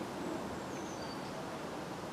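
Steady faint background noise with no distinct knocks or handling sounds, broken only by two brief, faint high chirps a little before and at about a second in.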